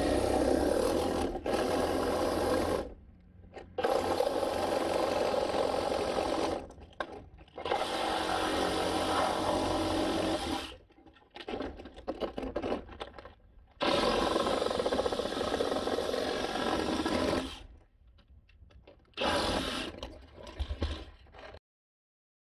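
Cordless reciprocating saw with a fine-tooth blade cutting through a vinyl gutter section, running in about five bursts of a few seconds each with short pauses between.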